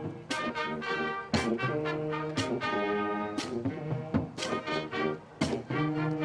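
High school marching band playing: the brass section holds full chords, punctuated by percussion hits about once a second.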